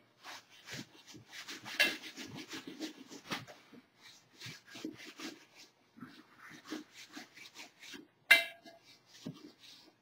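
Cotton rag buffing mold release wax on the inside of a fiberglass cowl mold: quick repeated rubbing strokes, a few a second, with short pauses and one sharper, louder sound about eight seconds in. The wax coat is being polished until the surface feels slick and turns shiny.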